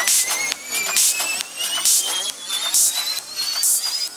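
Progressive psytrance breakdown: a synth tone rising steadily in pitch over hissing hits about once a second, with no kick drum.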